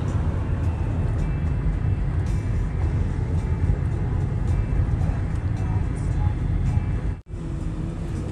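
Steady low road rumble inside a moving car's cabin, tyres and engine under way at street speed, breaking off abruptly near the end.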